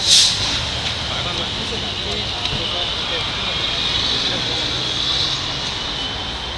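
Steady street traffic noise with a vehicle sound that slowly swells around four to five seconds in and then eases off. A short burst of noise comes at the very start.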